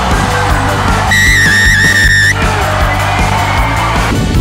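Background music with a steady beat. About a second in, a single long shrill whistle blast lasts just over a second.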